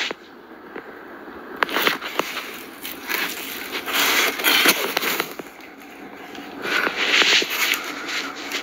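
Crackling, scraping rustle of the cab's carpet and fuzzy insulation being pushed aside by hand close to the phone's microphone, with sharp clicks of handling noise, in irregular bursts.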